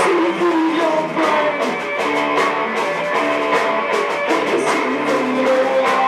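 Live rock band playing: bowed cello, electric guitar and drum kit, with regular drum and cymbal strokes under sustained, gliding instrument tones.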